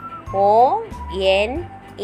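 A voice slowly calling out the letters 'O' and 'N' in a drawn-out, sliding sing-song, over background music.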